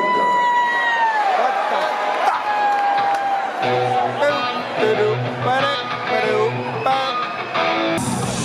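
Live rock band starting a song through a concert PA, with crowd noise. A held high note bends downward early on, then about three and a half seconds in an electric guitar starts strumming chords over a bass line.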